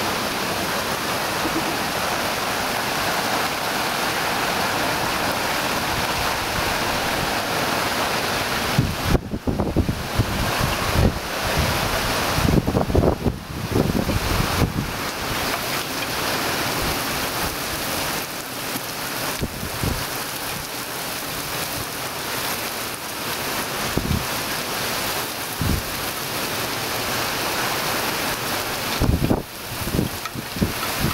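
Heavy summer-storm rain falling steadily on garden foliage. Gusts of wind buffet the microphone, hardest from about nine to fifteen seconds in and again briefly several times later, the last near the end.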